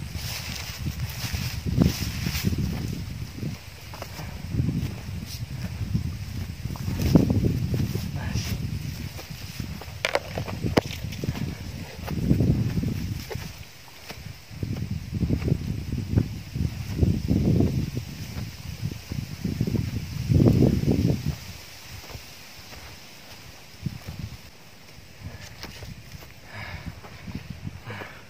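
Wind buffeting the microphone in irregular low rumbling gusts, each a second or two long, coming every two to three seconds, on an open grassy hillside climb.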